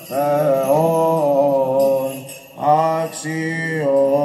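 Greek Orthodox Byzantine chant: a voice singing long, ornamented held notes over a steady low drone, with a short break about two and a half seconds in before the line resumes.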